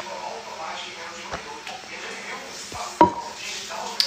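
A stainless steel drinking cup set down on a hard surface: one sharp metallic clank with a short ring about three seconds in, after quieter handling noise and a faint click.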